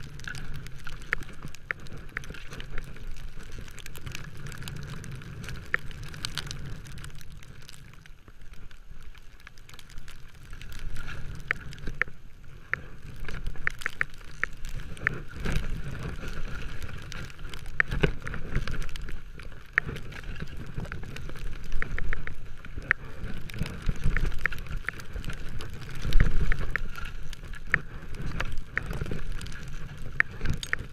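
Atomic skis sliding and turning through deep snow, heard on a camera worn by the skier: a continuous hiss with a low rumble, many small sharp clicks and knocks, and heavier surges with the turns, the strongest a little over three quarters of the way through.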